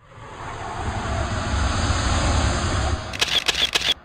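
Produced intro sound effect: a rising whoosh over a deep rumble swells for about three seconds, then a quick run of about five sharp clicks, cut off abruptly with a short fading tail.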